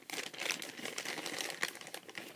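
Close crackling and rustling of hands working a soft-plastic crawfish bait onto a jig hook: a dense run of small sharp crackles.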